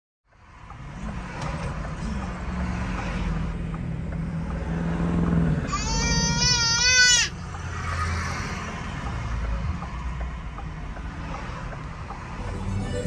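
Car interior rumble from engine and road while driving in traffic. About six seconds in, a loud, high-pitched wavering cry lasts about a second and a half.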